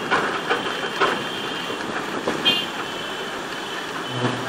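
Ride and traffic noise heard from inside a moving vehicle on a city street: a steady noisy rumble with a few knocks in the first second, and a brief shrill tone about two and a half seconds in.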